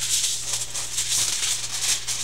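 Aluminum foil crinkling in repeated swells as hands smooth and pull a sheet flat over a pane of glass.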